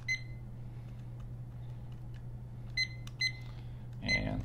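Handheld digital exercise timer beeping as its buttons are pressed to set it: one short high beep, then two more about half a second apart near the end, with a few faint button clicks between them, over a steady low hum.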